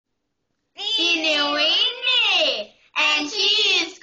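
A high-pitched, sing-song human voice in two long, drawn-out phrases, starting under a second in, with a short break between them.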